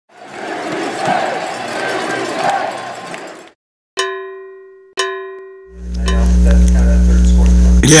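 Crowd noise for the first few seconds, then two ringing cowbell strikes about a second apart, each dying away, followed by a steady low hum.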